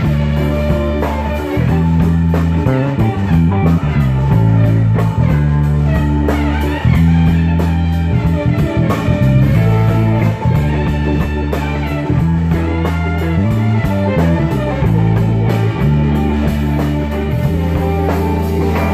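A band playing: electric guitar over a bass line that steps from note to note, with a drum kit keeping a steady beat.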